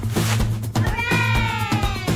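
Background music with a steady drum beat; about a second in, a single long cat-like meow slides slowly down in pitch over the music.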